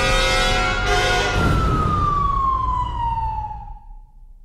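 A single siren wail over the closing chord of the music: one slow rise in pitch, then a long falling glide that fades out near the end.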